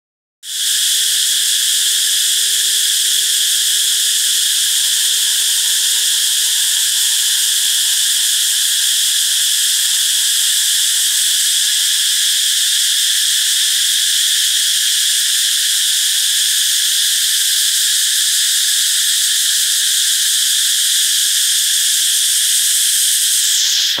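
Loud, steady chorus of insects: a dense, unbroken high-pitched shrill that cuts off abruptly at the very end.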